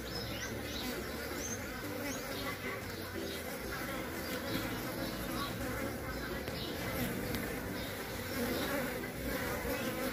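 Continuous buzzing of mandaçaia (Melipona mandacaia) stingless bee drones flying close around a queen on the ground, drawn by her scent to mate with her. The hum wavers in pitch and level as the bees pass nearer and farther.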